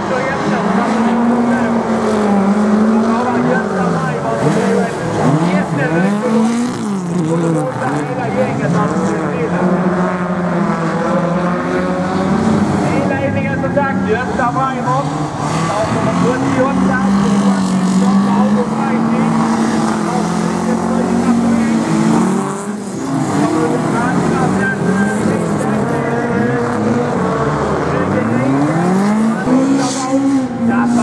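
Several folkrace cars racing, their engines revving up and falling back again and again through the corners, with more than one engine audible at once.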